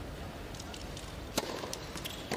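A tennis racket strikes the ball on a serve about one and a half seconds in: one sharp crack, followed shortly by a lighter tap. Under it runs the steady low background of an indoor arena.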